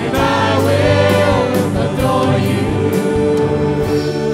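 Live gospel worship band: several singers in harmony over drum kit, bass, electric guitar and keyboards, the drums keeping a steady beat of about two strokes a second.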